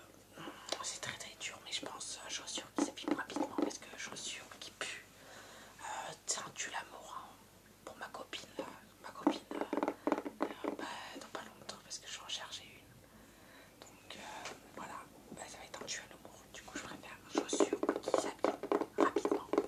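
Close-up whispered speech in French: a young man whispering phrase after phrase, with short pauses between them.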